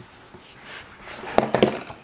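Handling noise as the drawing setup is moved: a brushing, sliding rustle builds, then two sharp knocks follow in quick succession near the end.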